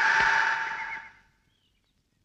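A long, held, high-pitched shout of "hey" fading away over the first second, followed by near silence.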